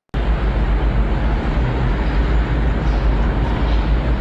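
Loud, steady background noise with a deep rumble on a home-recorded video's soundtrack. It cuts in suddenly as the recording starts playing.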